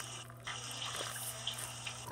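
A homemade paper-and-tape squishy being squeezed in the hands: soft crinkling and rustling of paper and tape, with a few small crackles.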